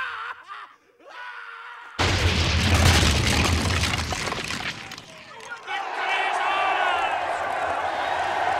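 A faint cry trailing away, then a sudden loud explosion about two seconds in, with a deep rumble that dies down over the next few seconds. From about six seconds in, a crowd cheering.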